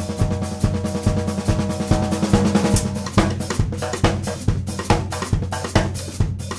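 Mapex drum kit played as a groove: bass drum, snare and hi-hat in dense strokes, with a steady low tone under them. About halfway through it grows busier, with brighter cymbal hits.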